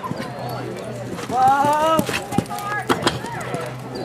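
A horse's hoofbeats on the dirt arena footing as it jumps a fence, with sharp thuds about two and three seconds in. A loud high call, rising then falling, comes about a second and a half in, over background talk.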